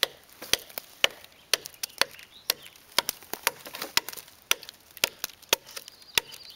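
Buck Punk fixed-blade knife chopping into a dry, dead log, a steady series of sharp strikes at about two a second.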